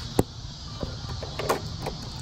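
A few short, light clicks over a steady low hum. The sharpest click comes just after the start, and fainter ticks follow about a second later.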